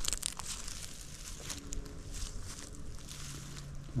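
Light crinkling and rustling handling noise with scattered small clicks, and a faint low hum in the middle.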